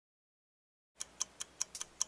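Silence for about a second, then a rapid, even ticking, about five ticks a second, like a clock: a sound effect timed to an animated intro's loading counter.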